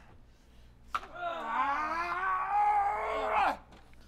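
A man's long, drawn-out yell or groan, starting about a second in and held for about two and a half seconds, its pitch wavering and then dropping away as it ends.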